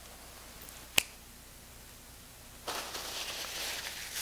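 A single sharp knock about a second in, then a paper napkin being crushed and crumpled in the hand, rustling near the end.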